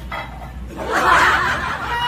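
A burst of laughter, about a second long, starting a little under a second in and fading near the end.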